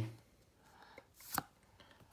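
Pokémon trading cards being shuffled from the front of a small hand-held stack to the back: a faint tick about a second in, then one sharp click of card stock a little past halfway.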